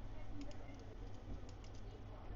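A few faint clicks from computer input as a web page button is clicked, over a low steady hum.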